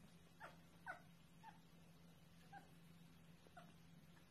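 Young goat kids giving faint, short bleats, about five in four seconds, each dropping in pitch; the one about a second in is the loudest. A low steady hum runs underneath.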